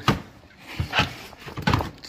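A padded fabric tool case being handled: rustling and a few short knocks, a sharp one right at the start and more about a second in and near the end.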